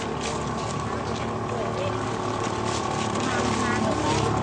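Crowd chatter, several people talking at once in the background, over a steady low mechanical hum.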